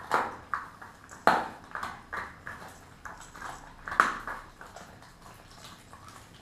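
Kelpie mix dog chewing a raw meaty bone: irregular crunches and cracks, the loudest at the start, a little over a second in and about four seconds in, growing quieter near the end.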